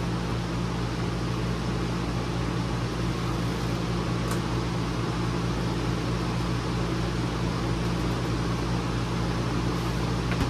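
Steady hum with an even rushing sound, as of a fan-driven machine running, with a faint click about four seconds in.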